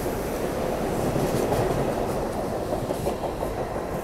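SEPTA Regional Rail electric train running along the station platform: a steady train noise with faint clicks from the wheels, loudest about a second and a half in and easing a little near the end.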